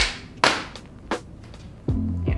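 Four sharp hand claps over quiet background music.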